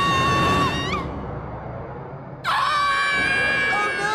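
Two cartoon characters screaming in one long held yell as their car runs out of control with no brakes. The yell breaks off about a second in, leaving a rushing noise. A second long, high cry starts about two and a half seconds in.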